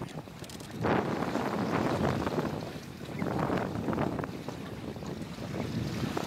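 Sailboat's masthead rubbing and scraping along the underside of a concrete bridge, heard as a rough, uneven rush of noise mixed with wind on the microphone; it swells about a second in and again after about three seconds.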